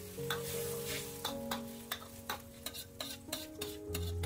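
Metal ladle clinking and scraping against a wok as bean sprouts are stirred in simmering broth, a dozen or so sharp clinks at about three a second, with a faint hiss from the liquid.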